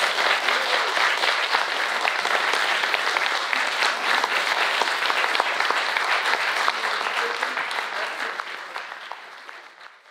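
Audience applauding steadily, a dense patter of many clapping hands, fading out near the end.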